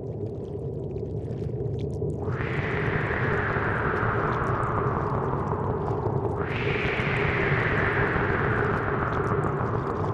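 Soundtrack sound design: a low, steady drone with two long whooshes that come in suddenly about two and six seconds in, each sliding slowly down in pitch.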